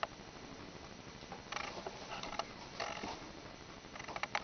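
Faint handling noise of a handheld camera being moved: a sharp click at the very start, then a cluster of small scrapes and taps in the middle, over a low room hiss.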